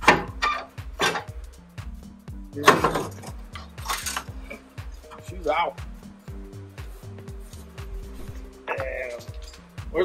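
Metal clanks and knocks from a Toyota Tacoma front differential housing being worked free and lowered onto a creeper. There are a handful of sharp strikes in the first four seconds, over background music with a steady bass line.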